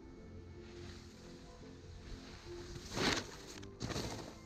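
Background music, with skis scraping over packed snow twice near the end, the louder scrape about three seconds in.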